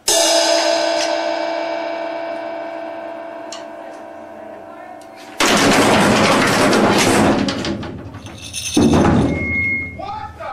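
Drum kit played hard: a loud struck ring that dies away over about five seconds, then about two and a half seconds of loud crashing drums and cymbals starting about five seconds in, a shorter loud burst near the end, and a brief high beep just before the end.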